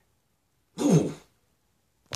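A man clears his throat once, in a single short burst about a second in.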